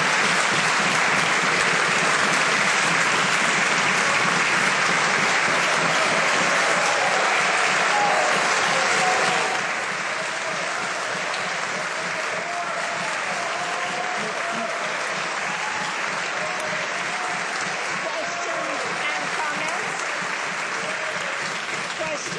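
A chamber of parliament members applauding steadily after a speech, with voices calling out under the clapping. It is loudest for the first nine seconds or so, then eases a little and carries on.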